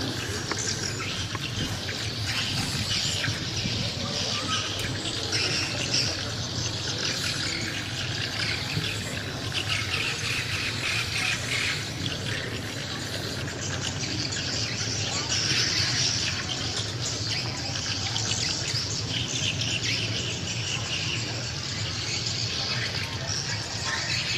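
Outdoor ambience of many small birds chirping without a break, over a low murmur of voices from a gathered crowd.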